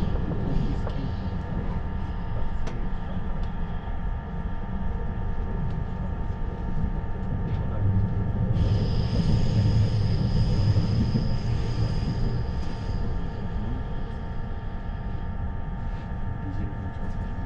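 Cabin noise of a 651 series limited express electric train running: a steady low rumble of the wheels and running gear with a few steady tones over it. A higher-pitched whine joins for about four seconds around the middle.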